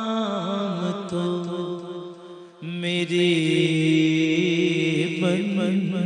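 A man's voice chanting a slow devotional recitation into a microphone, with long held, wavering notes. It pauses for breath about two and a half seconds in, then starts a louder new phrase.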